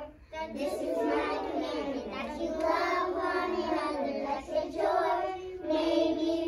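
A class of young children singing a song together in unison, after a brief break at the very start.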